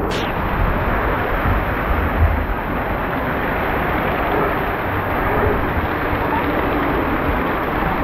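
Water spraying and splashing steadily over a water-play structure: a dense, even rush of water with faint voices in the background.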